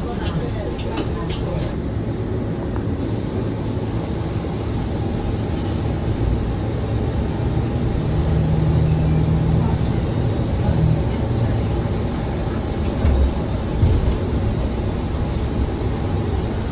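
Interior of a New Flyer XDE40 diesel-electric hybrid bus under way: steady low drivetrain rumble and road noise. A steady low tone comes in for a few seconds about halfway through, and there are a couple of short thumps near the end.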